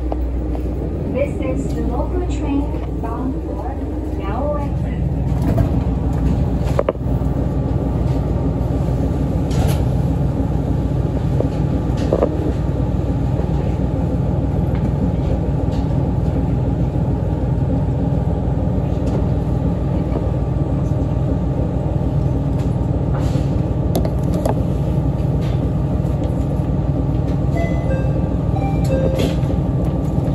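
ET122 diesel railcar's engine idling steadily while the train stands at the station, heard inside the car as a low, even hum. It grows louder about four seconds in.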